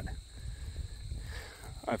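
Faint steady high-pitched insect chirring, such as field crickets, with a low rumble underneath, heard in a short break in speech.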